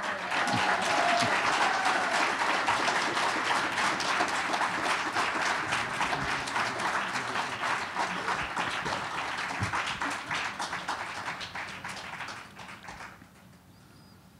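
Audience applauding, dying away about a second before the end.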